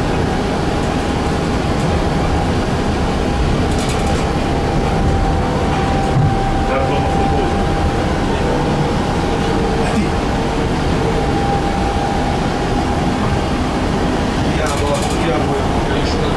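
Tram running along its track, heard from inside the car: a steady rumble of wheels on the rails with a steady motor whine, and brief high rattles about four seconds in and near the end.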